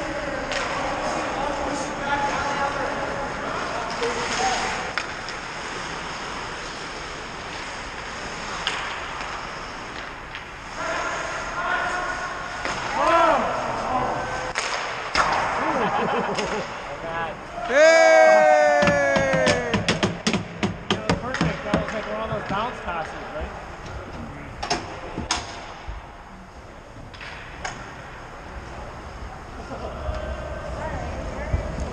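Ice hockey play heard from the bench: players' shouts mixed with sharp clacks of sticks and puck striking the boards. The loudest moment is a long shout about 18 seconds in, followed by a flurry of clacks.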